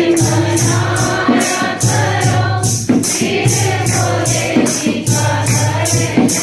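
Devotional group singing (bhajan) with instrumental accompaniment over a low sustained tone, kept in time by a steady percussion beat of about two and a half strokes a second.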